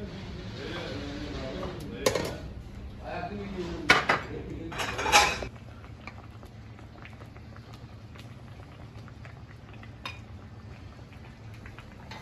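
A metal ladle clinking against a steel soup pot and porcelain plates as soup is dished up, with sharp clinks about two and four seconds in and another short clatter around five seconds. After that, mostly a steady low kitchen hum with one faint click.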